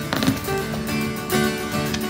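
Background music: a run of sustained pitched notes, with new notes starting every half second or so.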